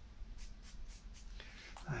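A stick of charcoal scratching across paper in a quick series of short strokes, several a second, as the sky is built up in layers. A voice begins near the end.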